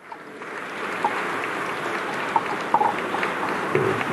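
Steady hiss-like room noise of a crowded mission control hall, swelling up over the first second and then holding, with faint scattered voices and small clicks in it.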